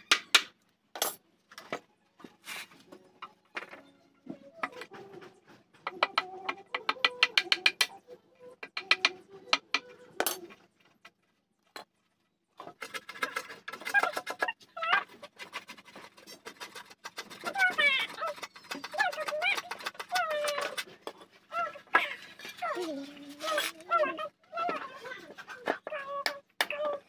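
Hammer striking the handle of a wood chisel cut into a timber plank: sharp knocks, coming in quick runs from about six to ten seconds in. From about thirteen seconds on, a voice is heard along with the occasional knock.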